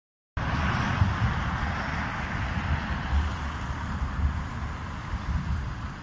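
Street traffic with a modern low-floor tram moving off along the road: a rushing hiss over a low rumble, beginning abruptly after a short gap and slowly fading as the tram draws away.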